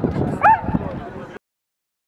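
A dog gives one short, high yelp about half a second in, over the chatter of a crowd of people; the sound then cuts off abruptly to silence.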